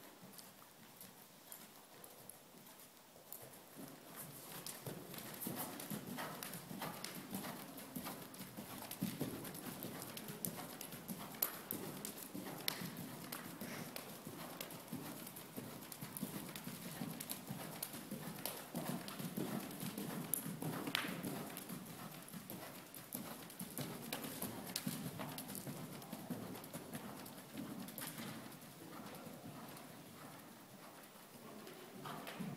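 Hoofbeats of a horse trotting on the sand footing of an indoor arena, a steady run of dull thuds. They grow louder about four seconds in as the horse passes close, then fade toward the end as it moves away.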